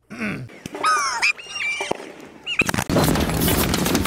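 A throat clear, then short squeaky whistle-like sounds that glide up and down. From about two and a half seconds in, a dense crackling din of gunfire and battle noise takes over and is the loudest sound.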